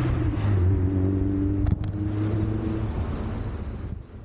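MicroGo V2 electric scooter riding along a paved path: a steady low motor hum with tyre and road rush, and a single click about 1.7 s in.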